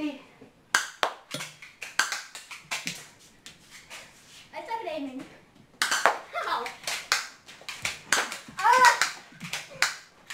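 Boys shouting and yelping without words amid a rapid run of sharp clicks and smacks from a spring airsoft pistol fight, with quick steps on a concrete floor; the loudest shout comes near the end.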